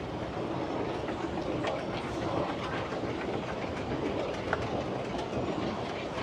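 Escalator running: a steady mechanical rumble with scattered faint clicks.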